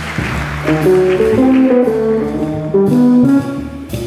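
Live jazz quartet: trombone plays a melodic line of held and moving notes over upright bass, drums and electric archtop guitar.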